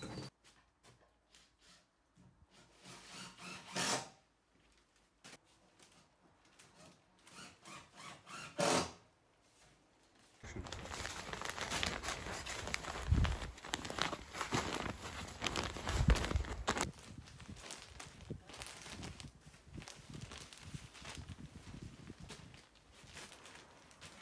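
Scattered knocks and handling noises of timber floor-framing work, becoming a denser run of scraping and clicking from about ten seconds in.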